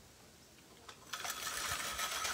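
A hand-cranked rotary food slicer shredding broccoli. It starts a little over a second in, after near silence, as a steady mechanical noise.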